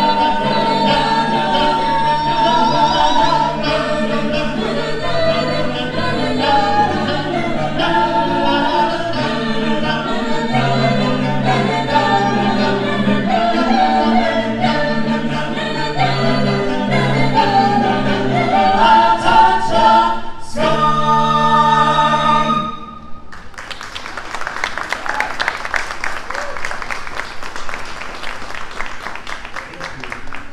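Mixed a cappella vocal ensemble singing in close harmony over a low bass line, the song closing on a held chord about 22 seconds in. Audience applause follows to the end.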